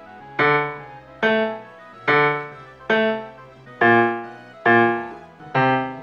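A digital piano played slowly with the left hand. Seven single notes (D, A, D, A, A, A, C) are struck about one a second, and each is left to ring and fade.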